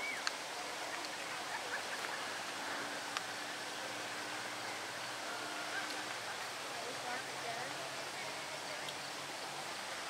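Steady outdoor hiss with faint, distant voices talking.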